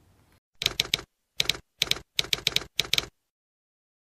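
Typewriter keystroke sound effect: about a dozen clacks in uneven clusters, with dead silence between them, stopping about three seconds in.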